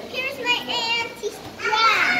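Young children's high-pitched voices talking, in two short bursts.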